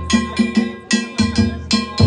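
Danjiri float's festival music: hand-held brass gongs (kane) struck in a fast, even rhythm of about four strokes a second, over the thumps of the float's taiko drum.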